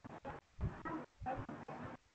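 Faint, choppy background sound leaking through a participant's unmuted microphone on a video call, cutting in and out every few tenths of a second.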